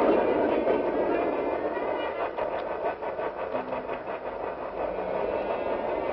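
A train running, its noise gradually fading away, with a regular clatter of wheels over rail joints in the middle.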